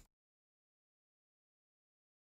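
Silence: the audio track is cut to digital silence.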